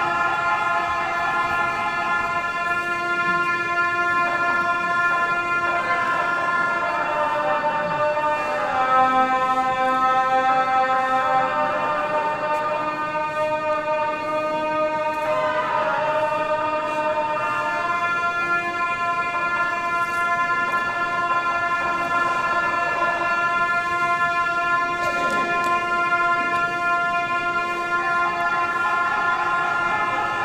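Tibetan ceremonial horns, gyaling shawms, playing long, held notes together, the melody stepping up and down between pitches.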